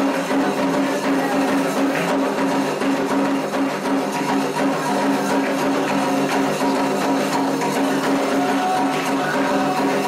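Candomblé ritual music: atabaque hand drums and an agogô bell playing a steady rhythm under sustained group singing.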